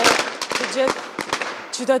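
Firecrackers and fireworks going off: a rapid, irregular string of sharp bangs, densest in the first half second and thinning out after.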